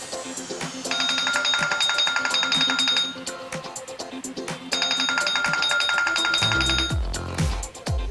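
A phone timer alarm rings in two bursts of about two seconds each: a rapidly pulsing electronic ringing tone that marks the end of a ten-second countdown. Background music plays underneath, with a beat coming in near the end.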